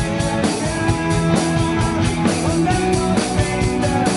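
Acoustic drum kit played in a steady rock beat, snare and cymbal hits over a rock backing track with sustained guitar and keyboard notes.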